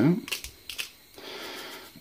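Hand-held sea-salt grinder being twisted, grinding salt crystals: a few sharp crunching clicks in the first second, then a steady grinding noise for most of a second near the end.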